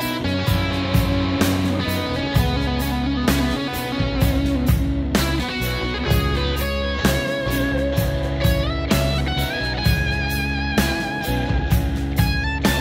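Instrumental break of a rock song: an electric guitar plays a melodic lead with bent, wavering notes over bass and a steady drum kit beat.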